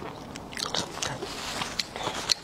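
Close-miked chewing of raw shrimp: a string of short, sharp wet mouth clicks and smacks.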